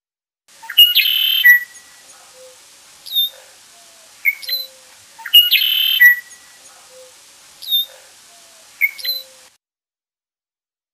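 Red-winged blackbird singing its conk-la-ree song twice, each time a short note running into a buzzy trill of about half a second. Four single short down-slurred call notes fall between and after the songs.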